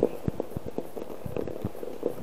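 A bicycle rattling over rough, cracked sea ice: an irregular run of short clicks and knocks.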